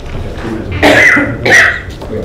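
A person coughing twice in quick succession, about a second in and again half a second later.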